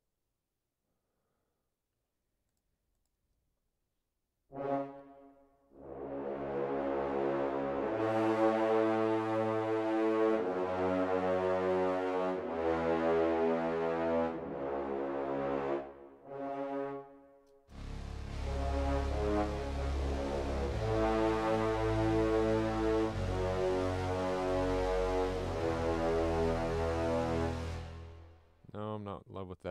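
Sampled orchestral brass, led by French horns, playing sustained chords in an epic trailer cue. After a few seconds of silence a short chord sounds, then held chords over a low bass. After a brief break, a fuller section with a heavy low end comes in about two-thirds of the way through and stops just before the end.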